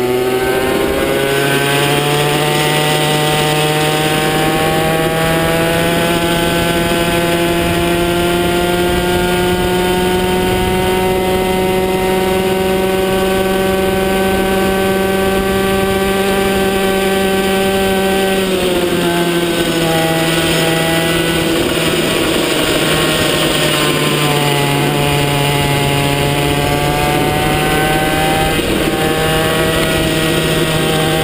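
Racing kart engine heard from on board, running at high revs under full throttle: the pitch climbs in the first couple of seconds, holds high and slowly rises, drops about two-thirds of the way through as the driver lifts for a corner, dips again and then climbs once more near the end.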